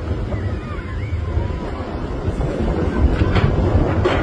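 Wind buffeting the microphone outdoors, a steady low rumble, with a few faint high gliding whistles in the first second and a half.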